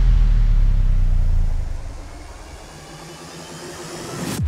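A deep, steady low rumble that dies away about halfway through, leaving only a faint low hum.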